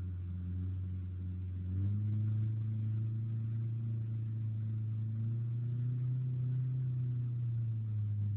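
Mazda B2300 pickup's 2.3-litre four-cylinder engine held at high revs, stepping up further about two seconds in, while the rear wheels spin in mud: the truck is stuck and not moving.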